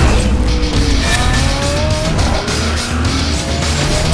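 Intro theme music with a steady beat, mixed with race-car sound effects: engine revs climbing in pitch and tyre squeal.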